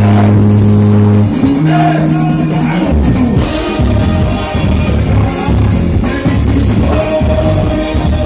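Live band playing loud amplified music: long held bass notes for the first few seconds, then a choppy, driving beat from about three seconds in.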